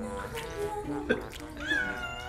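A domestic cat meowing repeatedly in protest while being held in bathwater, with one call rising in pitch near the end. A short, sharp sound comes about a second in.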